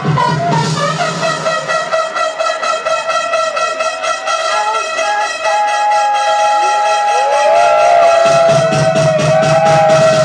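Loud electronic dance music over a club sound system. The bass and kick drop out about two seconds in for a breakdown of held synth notes with a rising line, and the bass comes back in near the end.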